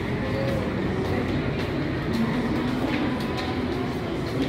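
Indoor shopping-mall ambience: a steady low rumble with faint background chatter and a few light footsteps on a tiled floor.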